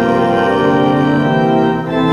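Church organ playing a hymn in sustained chords, moving to a new chord near the end.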